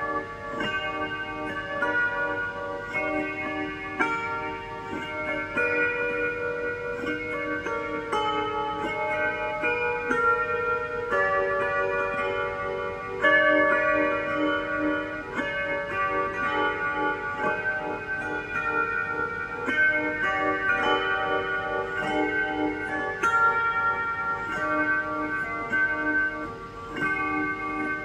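Slow instrumental music of plucked lap harp and electric guitar played through delay and modulation pedals, the notes ringing on and overlapping.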